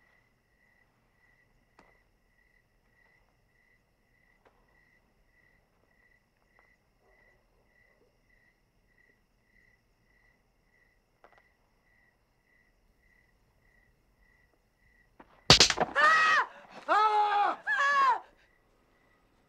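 A faint cricket chirps steadily, about twice a second, in an otherwise quiet room. Near the end a sudden sharp bang is followed by loud, drawn-out yelling from a man.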